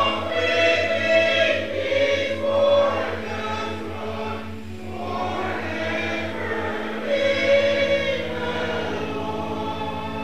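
Church congregation singing a hymn together in held notes, over a steady low sustained tone.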